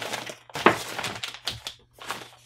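Plastic parts packaging being handled at a cardboard box: irregular crinkling and small clicks, with one sharp crack a little after half a second in.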